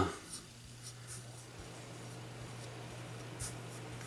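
Fingers rubbing Tru-Oil into a Mossberg 500's wooden stock: faint, brief rubbing strokes of skin on wet wood, over a steady low hum.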